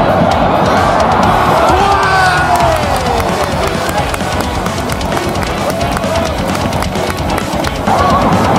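Stadium crowd of football supporters singing a chant together, with many voices rising and falling at once, and sharp claps or drum hits running through it.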